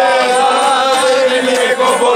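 A group of men singing a Cretan folk song together in unison, stretching out long, wavering held notes.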